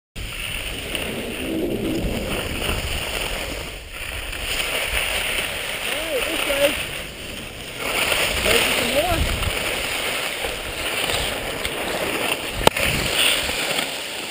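Skis sliding and scraping over packed snow while skiing downhill, with wind rushing over the camera microphone as a steady hiss and rumble. A sharp knock sounds once near the end.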